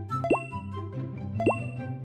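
Light background music with two short rising 'bloop' sound effects, about a second apart.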